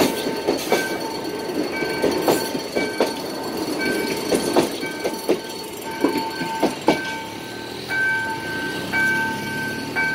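CSR RC03 electric multiple unit passing at a level crossing, its wheels clacking over the rail joints in sharp, irregular clicks that stop about seven seconds in as the last car goes by. A repeating warning tone from the crossing signal keeps sounding, steadier near the end.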